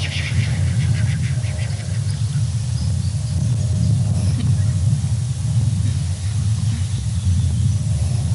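Low, fluctuating outdoor rumble, with faint high bird chirps in the first two seconds.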